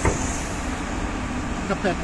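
Steady city traffic noise with a low engine rumble, a short knock right at the start, and a few words of speech near the end.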